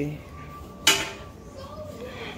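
A single sharp clink, about a second in, of a hard object struck or set down, against faint background noise.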